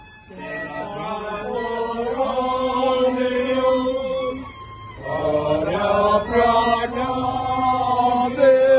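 A group of voices chanting a devotional hymn together in long held, slightly gliding phrases, breaking off briefly about halfway through and then starting the next phrase.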